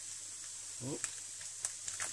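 Chopped pork sisig sizzling in a hot pan on an electric grill, a steady quiet hiss, with a couple of faint clicks as an egg is tapped open with a spoon.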